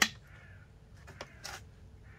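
Handling of a switched-off random orbital sander: a sharp click at the very start, then a couple of light knocks about a second and a half in as it is set down on a plastic work bench.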